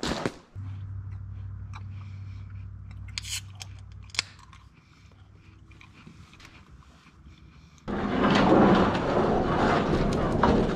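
A low steady hum inside a pickup's cab, with a few sharp clicks and small handling sounds. Near the end, after a cut, a loud, uneven crunching noise outdoors: a camera carried over gravel, with footsteps.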